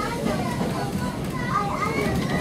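Children's high voices chattering and calling over the steady low rumble of a railway carriage in motion.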